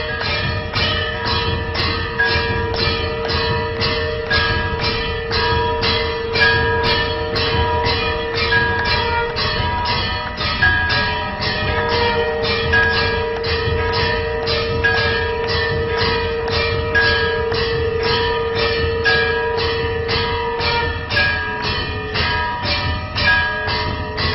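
Temple bells struck in a fast, even rhythm of about three ringing strokes a second during an aarti. A long steady tone is held under them, breaks off briefly near the middle, then resumes.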